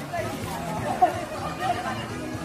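Indistinct chatter of several people's voices at a distance, with no clear words.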